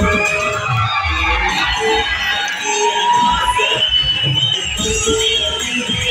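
Loud amplified music with a repeated bass beat, with a crowd cheering and shouting over it.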